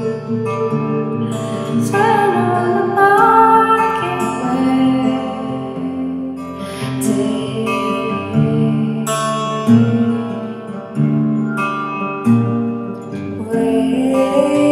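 Slow, sparse song music with guitar and a wavering melody line that slides in pitch a couple of seconds in.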